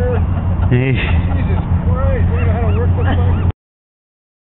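Indistinct voices talking in the background over a steady low hum, cutting off suddenly to silence about three and a half seconds in.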